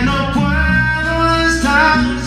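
Live band music: a male voice holds a long sung note that bends upward near the end, over a semi-hollow-body electric guitar and electric bass.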